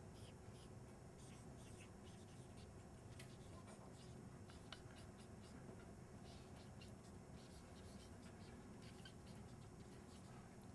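Near silence: room tone with faint, scattered small scratches and ticks, like writing.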